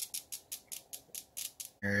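Spark plug arcing on the bench, fired by a 12 V DC CDI unit and ignition coil: a run of sharp, evenly spaced snaps, about five a second, that stop near the end.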